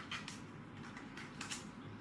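Light plastic clicks and taps from a drone battery and its clip-on landing gear being handled and fitted together: a couple of faint clicks just after the start and a few more a little past the middle.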